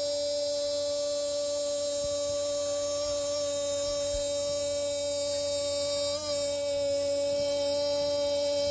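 Radio football commentator's long sustained goal cry, a single drawn-out 'gooool' held on one steady pitch, with a slight waver about six seconds in; it calls a goal just scored.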